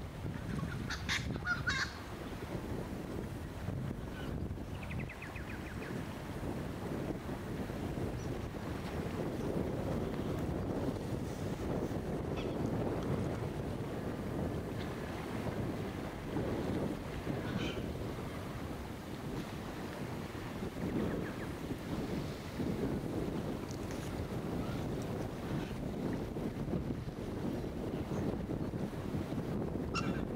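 Steady wind buffeting the microphone, with small waves lapping on a sandy lakeshore. A few brief bird calls come through, the clearest about a second and five seconds in.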